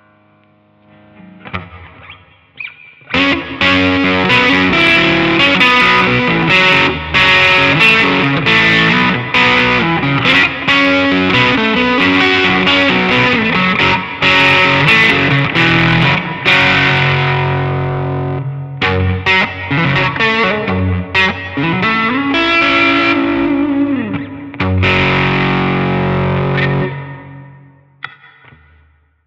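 Telecaster-style electric guitar played through a Blackstar HT5 valve amp's drive, heard through a Nux Mighty Plug's cabinet IR: distorted chords and riffs. A few quiet notes come first, full playing starts about three seconds in, breaks briefly around the middle, and fades out near the end.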